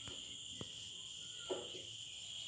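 Steady high-pitched insect chirring in the background, with a few faint marker strokes on a whiteboard, one about half a second in and one at about one and a half seconds.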